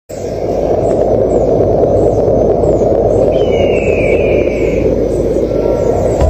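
A steady, loud low rushing noise. Faint short high chirps repeat about twice a second, and a faint falling whistle-like tone runs for about a second and a half from about three seconds in.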